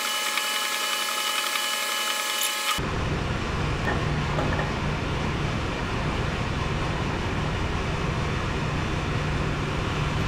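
Steady industrial machinery noise with a continuous low drone. For about the first three seconds a set of steady high whining tones sits over it, then cuts off suddenly.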